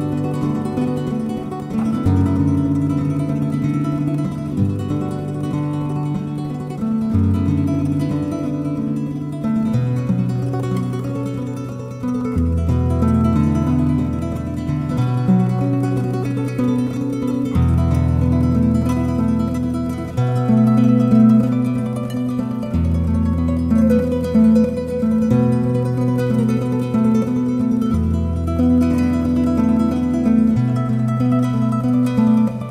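Classical guitar playing a gentle lullaby: plucked broken chords over low bass notes that change about every two to three seconds.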